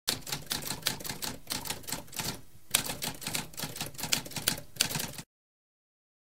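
Typewriter typing: quick, uneven keystrokes with a short pause about two and a half seconds in, stopping abruptly a little after five seconds.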